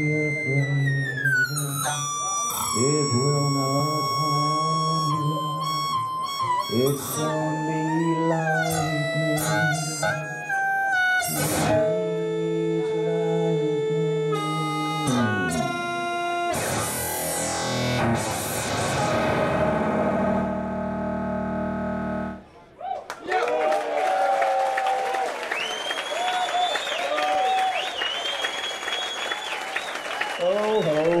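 Live electronic music from a band: heavily processed tones whose pitch jumps and glides in steps, turning into falling noisy sweeps. The music cuts out about two-thirds of the way through, and audience applause and cheering follow.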